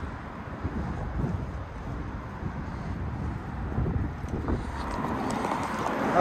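Road traffic noise, a steady low rumble, with wind buffeting the phone microphone.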